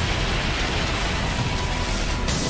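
Anime battle soundtrack: a steady, dense roar of noise with music underneath.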